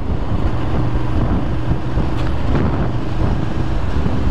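Ducati Monster 696's air-cooled L-twin engine running steadily at low city speed, with wind rushing over the camera microphone.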